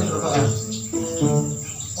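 Crickets keeping up a steady high-pitched trill, with pitched music or voices underneath.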